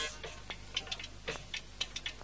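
Quiet music: light, sharp percussion taps from a chaabi ensemble, several in quick pairs about half a second apart, with no singing.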